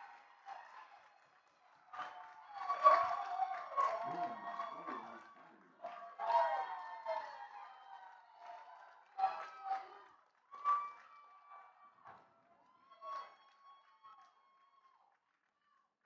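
Scattered shouts and calls from lacrosse players and spectators, loudest about three seconds in, then shorter, sparser calls toward the end.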